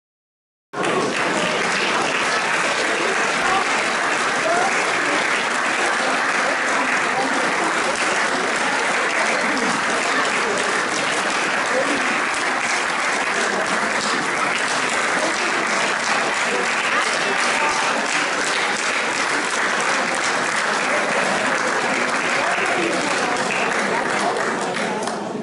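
Audience applauding, a dense, steady clapping that starts abruptly under a second in.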